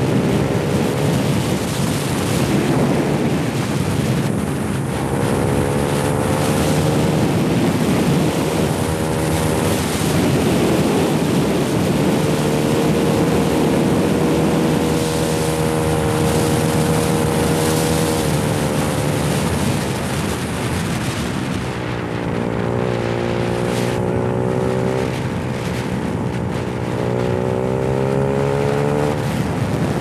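Trail motorcycle engine running on the road, its pitch rising and falling repeatedly with the throttle, over a steady rush of wind and road noise.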